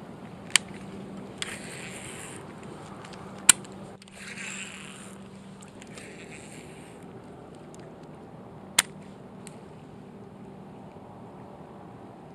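Fishing reel being cranked to retrieve a lure, with three sharp clicks (the loudest about three and a half seconds in) and a few short hissy bursts over a low, steady background.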